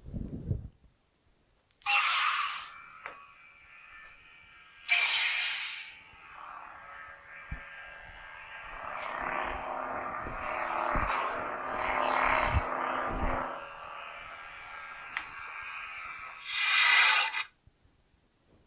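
Lightsaber sound font playing through a custom Proffieboard saber's small speaker. There are ignition-like bursts about two and five seconds in, then a buzzing hum that swells and fades for about ten seconds as the saber is moved, and a final short burst near the end.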